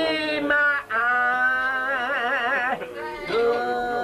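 A man singing solo, holding long drawn-out notes with a short break about a second in and a wide vibrato on the long note in the middle.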